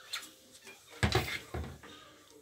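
Handling knocks: a light click, then about a second in a short cluster of bumps with a deep thud and a brief hiss, from a plastic trigger spray bottle being handled near the camera.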